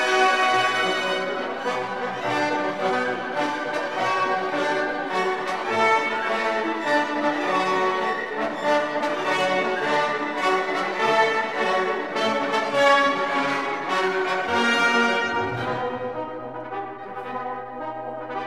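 Orchestral background music with brass.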